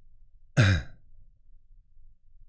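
A man's short voiced sigh, falling in pitch, about half a second in.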